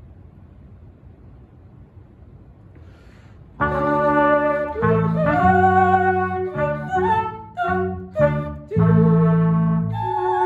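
A small instrumental ensemble enters together on a chord about three and a half seconds in, after quiet room tone, and plays a phrase of sustained chords. A few short, separated notes come near the end before a long held chord.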